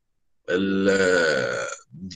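A man's drawn-out hesitation vowel, one held voiced sound of about a second and a half, its pitch sinking slowly. The sound drops out completely for the first half second, as online meeting audio does between words.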